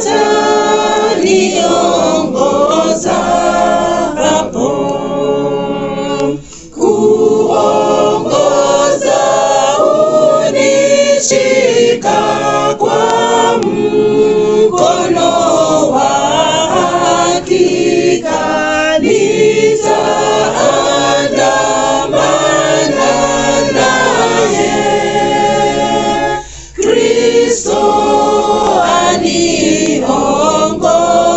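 A small group of two men and a woman singing a hymn together unaccompanied, in long sung phrases. There are brief breaks about seven seconds in and again near the end.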